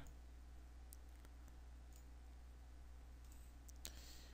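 Near silence with a few faint clicks of a computer mouse as a file is selected and dragged, the loudest click near the end.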